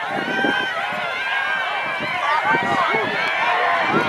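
Crowd of football spectators yelling and cheering during a play, many voices at once, growing louder toward the end.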